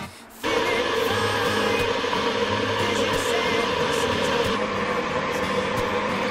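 Electric kettle heating water, switched on with its power light lit: a loud, steady rushing noise cuts in sharply about half a second in and holds even.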